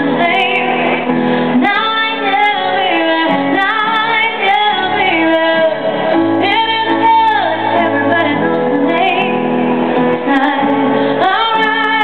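A live pop song: a woman singing a gliding melody over loud backing music, played over a concert PA and recorded from within the audience.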